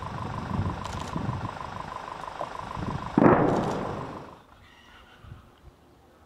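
A distant explosion from shelling: a sudden loud blast about three seconds in that dies away over about a second, over a low rumbling background. The sound falls away to quiet a little after four seconds.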